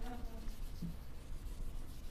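Marker scribbling and rubbing against a whiteboard in quick back-and-forth strokes. A fresh marker is being run over permanent flip-chart marker ink to lift it off the board.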